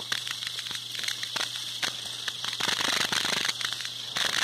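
Irregular crackling clicks and rustles of handling noise on a phone's microphone, over a steady hiss.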